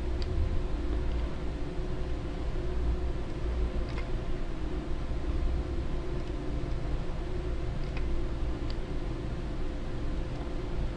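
Steady low hum and hiss of background noise, with a few faint, widely spaced computer mouse clicks as faces are selected and deleted.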